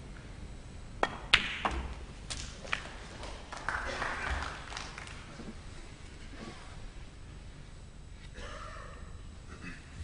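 Snooker balls clicking as the black is potted: a light tap of cue tip on cue ball about a second in, then a sharper crack of cue ball on object ball and a few further knocks of balls in the pocket and jaws over the next second and a half, followed by brief crowd noise.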